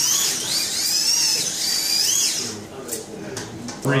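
Slot cars' small electric motors whining at high pitch, the whine rising and falling as the cars speed up and slow down around the track, dying away after about two and a half seconds.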